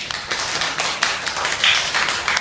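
Guests applauding: many hands clapping in a dense, steady patter.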